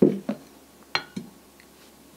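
Malossi Fly Clutch and its steel clutch bell knocking and clinking together as they are handled and set down on a table: four short clanks, the first the loudest, and one about a second in with a brief metallic ring.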